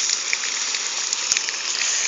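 Water spraying from a garden hose onto the horses and the dirt: a steady hiss of spray.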